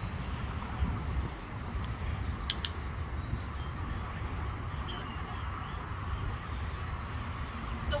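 A dog-training clicker clicking twice in quick succession about two and a half seconds in, the marker for the puppy holding a down, over a steady low rumble of background noise.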